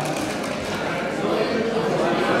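Metal cocktail shaker being shaken, its contents rattling, over the murmur of a crowd in a large hall.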